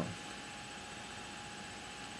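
Steady background hiss with faint, even high tones and no other sound: the recording's noise floor between spoken remarks.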